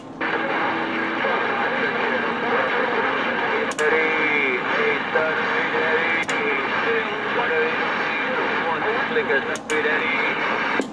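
CB radio on channel 19 receiving a weak transmission: a faint, broken voice buried in static, too garbled to follow, with a few sharp clicks. The signal is fading in and out and the call is lost.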